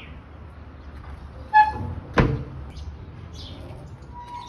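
A metallic clank with a short ringing tone about one and a half seconds in, then a sharp knock about half a second later, from the steel body, lid or grate of an offset barbecue smoker.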